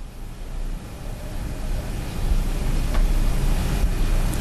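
A steady low rumbling noise, like traffic or machinery, that slowly grows louder, with a faint click about three seconds in.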